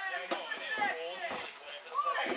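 Voices of several people talking and calling out over one another, with no clear words, and a short sharp sound just after the start.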